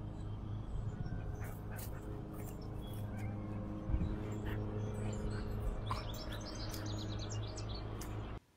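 Small birds chirping, with a quick run of short high chirps near the end, over a steady low rumble. A single thump comes about four seconds in.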